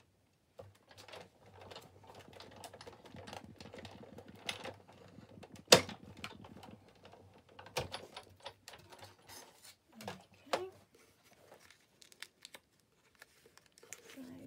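Hand-cranked die-cutting machine being cranked, a run of fast, even clicking as the cutting plates pass through the rollers, then one sharp loud click about six seconds in, followed by scattered handling clicks.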